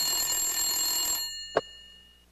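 Desk telephone bell ringing once for about a second, then a single sharp click a moment later as the handset is picked up.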